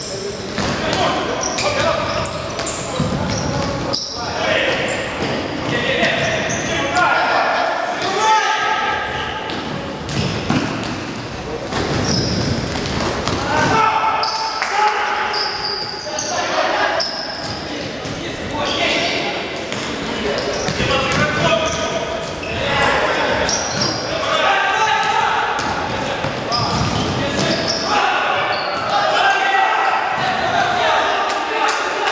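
Futsal players shouting to one another, the voices echoing in a large sports hall, with the thuds of the ball being kicked and bouncing on the wooden floor.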